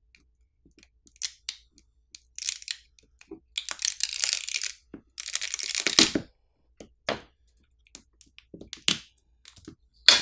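Adhesive under a smartphone battery crackling and tearing as the battery is pried up from the frame with a metal pry tool. It comes in several bursts, the longest and loudest in the middle. The adhesive is strong, hard to release even with the pull pouch. A few sharp clicks follow near the end.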